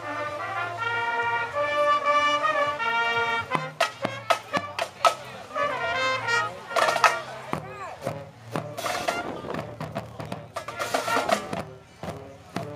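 A marching band playing. Brass holds chords for the first few seconds, then the drums carry on with sharp beats and only short brass phrases.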